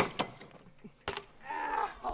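BMX bike hitting a wooden grind box: a sharp clack as the pegs land on the box's edge, a second knock a moment later, and another knock about a second in as the bike comes back down to the pavement. A brief pained voice follows near the end.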